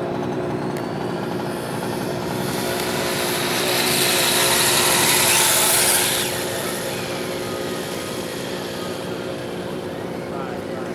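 Radio-controlled motorcycle running on asphalt: a high motor whine that swells about four to six seconds in, then drops off as the bike moves farther away.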